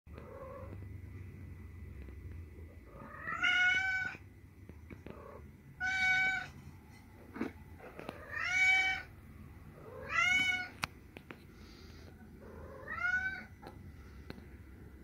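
An animal calling five times, each call about a second long and a couple of seconds apart, rising then falling in pitch.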